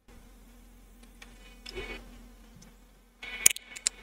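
A faint steady buzzing hum runs throughout, with a few soft clicks. A short burst of sharper, louder clicks comes a little past three seconds in.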